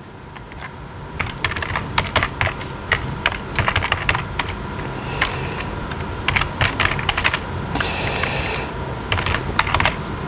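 Typing on a computer keyboard: quick, irregular key clicks, over a faint steady hum.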